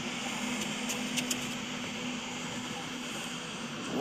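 Steady background hiss with a low, even hum, broken only by a couple of faint ticks a little after a second in.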